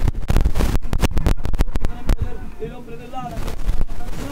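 A rapid, irregular burst of loud bangs, heaviest in the first two seconds and thinning out afterwards, with a man's voice coming in during the second half.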